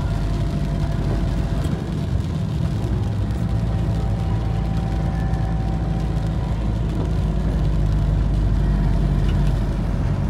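Car driving along a wet road, heard from inside the cabin: a steady low engine and tyre rumble.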